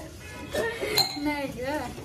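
A single sharp clink of a kitchen utensil against a dish about a second in, with a brief ring after it.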